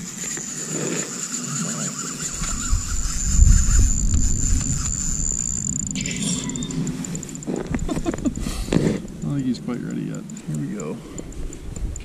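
Spinning reel on an ice-fishing rod giving a steady high buzz of fast clicks while a hooked lake trout is fought, breaking up about halfway into a string of rapid separate ticks. A low rumble hits the microphone in the first half.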